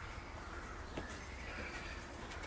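Faint outdoor ambience: distant birds calling over a low wind rumble, with a single click about a second in.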